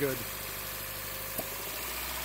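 Toyota Starlet four-cylinder engine fitted with individual throttle bodies, idling steadily, with the throttle flaps of cylinders three and four not sealing properly. A single short click comes about one and a half seconds in.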